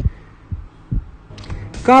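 A short pause in speech with only a faint low background and a couple of soft low thumps, then a voice starts speaking near the end.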